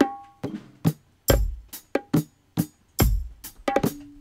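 Reggae drum and percussion recording: sharp hits in a steady rhythm, with a deep kick drum about every 1.7 seconds.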